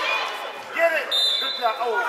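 Spectators and players shouting in a large gym during a basketball game, with a ball bouncing on the hardwood court. A short, high, steady tone starts about a second in.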